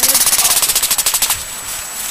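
A rapid, even rattle of sharp clicks, more than ten a second, that fades out about one and a half seconds in.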